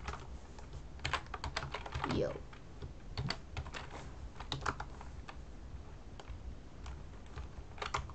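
Computer keyboard keystrokes: irregular clicks in short runs as a line of code is typed.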